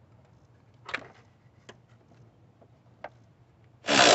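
A few light clicks and knocks from a battery cable clamp and terminal hardware being handled and fitted onto the battery, the loudest about a second in. A loud rush of noise cuts in right at the end.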